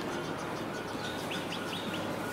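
A small bird chirping four short, high notes in quick succession in the second half, over a steady low background noise.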